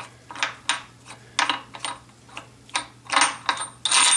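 About a dozen sharp metallic clicks and clinks, irregularly spaced, a few ringing briefly near the end. They come from the camshaft of a 5.3 LS V8 being slid into the engine block, its steel lobes knocking against the cam bearings and block. A faint steady hum sits underneath.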